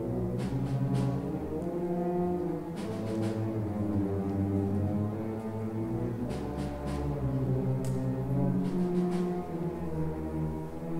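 Combined school orchestra and concert band playing a slow passage of held chords that change every second or so, weighted to the low brass and low strings, with a few short light taps over it.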